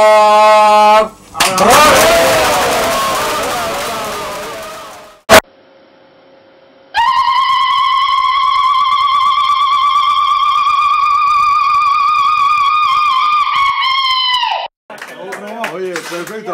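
A held sung note ends, then a loud burst of voices fades away over a few seconds. After a click and a short pause comes one long, steady, trumpet-like note with vibrato, held about eight seconds and then cut off sharply.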